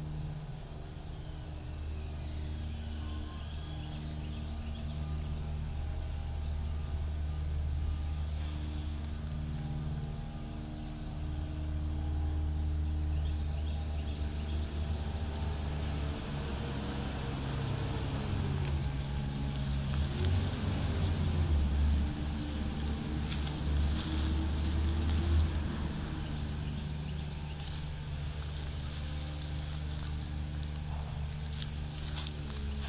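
An engine running steadily with a low hum. About halfway through, its pitch rises and falls a couple of times as it gets louder, then it settles back.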